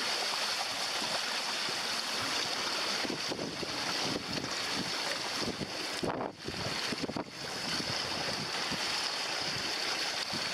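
Wind buffeting the microphone and water rushing and splashing along the hull of a sailing canoe driving through choppy water. The rush dips briefly twice, about six and seven seconds in.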